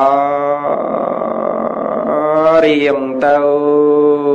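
A man's voice chanting in two long, drawn-out held notes, with a short syllable between them; the second note slowly sinks in pitch. It is a Buddhist monk's melodic intoned recitation within a Khmer sermon.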